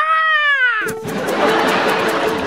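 A high, drawn-out, meow-like cry that falls in pitch and ends just under a second in. Music comes in right after it, led by a rushing noise.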